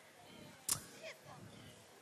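A near-quiet pause picked up by a handheld stage microphone, broken by one sharp click about two-thirds of a second in and followed by a few faint, voice-like glides in pitch.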